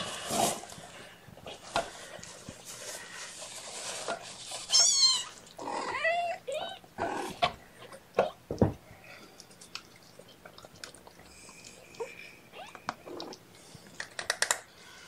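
Domestic cats mewing: one high-pitched mew about five seconds in, then a few short mews and chirps just after, amid soft rustling and handling noises on the blanket.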